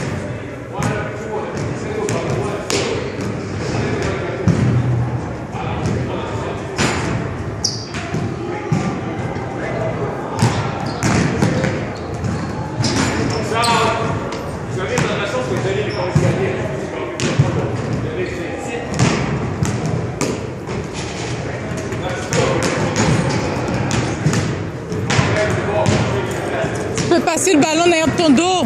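Basketballs bouncing on a hardwood gym floor, irregular thuds echoing in a large gymnasium, over background voices.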